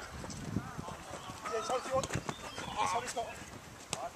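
Footballers' shouts and calls carrying across an open pitch during play, with a few sharp knocks in between.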